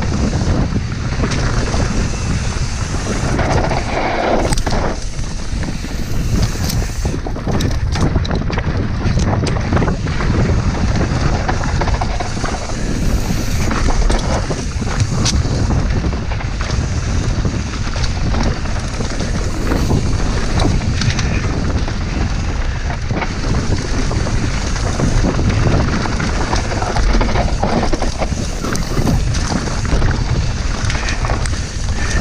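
Wind buffeting the microphone of a camera on a mountain bike descending a dirt trail, over the steady rumble of the tyres, with occasional sharp knocks and rattles as the bike hits bumps.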